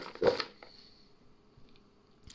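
A brief voice sound at the start, then near silence with a few faint rustles and ticks of chopped vegetables being shaken in a plastic bowl.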